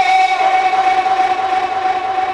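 A man's voice holding one long, steady sung note into a microphone during a devotional recitation.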